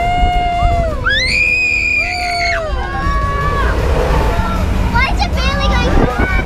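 Riders on a moving fairground ride screaming and whooping: held cries, with one long high scream from about a second in to two and a half seconds. Under them is a low rumble of wind on the ride-mounted camera's microphone.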